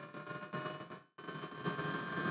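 Webasto diesel water heater firing up, its combustion fan running at low speed as a faint steady hiss with a thin steady whine, slowly growing louder.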